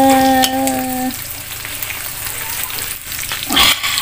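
Chopped meat sizzling in a large wok over a wood fire while a metal ladle stirs and scrapes against the pan, with a louder scrape about three and a half seconds in. A person's voice holds one long, steady note for the first second.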